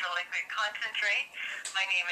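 A voice on a telephone call, heard through the phone's speaker: thin, with no low end, talking without a break.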